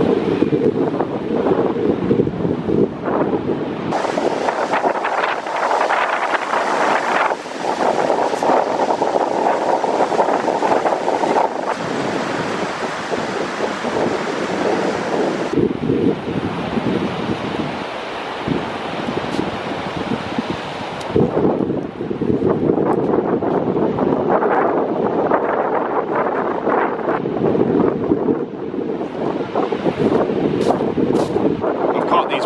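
Wind buffeting the microphone over breaking surf, a loud, steady rushing noise that changes sharply a few times.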